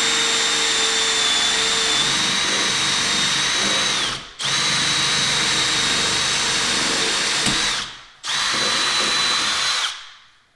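Cordless drill spinning a 1-inch hole saw through a jig into a wooden door, cutting the latch bore. It runs in a steady whine, stops briefly about four seconds in and again about eight seconds in, then stops near the end.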